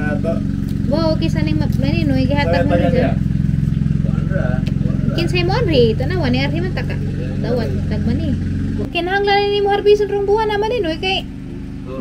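People talking, over the steady low hum of an engine running, which changes about nine seconds in.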